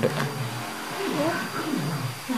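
A child's voice, faint and wordless, with a few soft rising and falling sounds about a second in, over a steady low hum.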